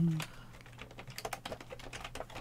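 Computer keyboard typing: a run of quick, irregular key clicks, starting about half a second in.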